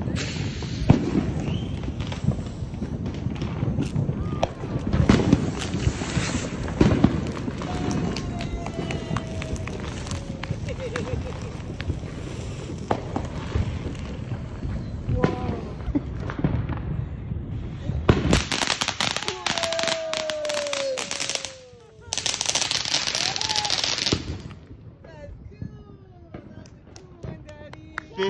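A ground fountain firework crackling steadily as it sprays sparks, then two loud hissing spurts near the end, with onlookers' voices.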